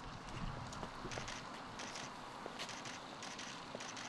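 Footsteps on stone paving: irregular taps and light scuffs, with brief rustling clicks among them.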